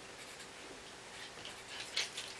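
Felt-tip marker pen writing on paper: a run of faint short scratchy strokes, busier in the second half, with a sharper stroke near the end.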